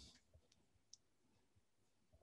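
Near silence: room tone, with one faint, short click about a second in.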